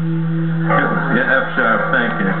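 Guitar starts strumming about two-thirds of a second in, over a steady low hum, as a band begins to play.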